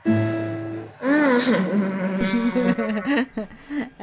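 Acoustic guitar plucked once at the start, a low note ringing and fading for about a second. Then the playing stops and a person's wordless voice laughs and exclaims, with wavering pitch, heard through a video-call connection.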